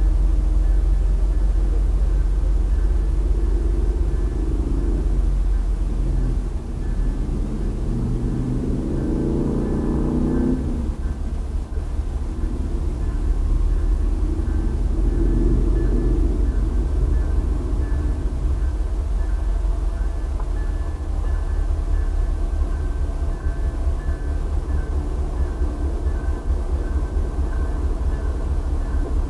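Steady low vehicle rumble, with a passing motor vehicle whose engine note rises and swells from about eight seconds in, then cuts off at about ten and a half seconds.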